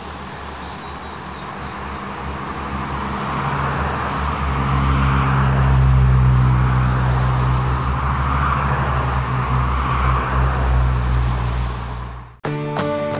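A line of 1980s Toyota cars, among them an AE86 Sprinter Trueno, driving past one after another. Their engines hum low and their tyres hiss on the road. The sound builds to its loudest about halfway through as the nearest car passes, and rises and falls again as more cars follow.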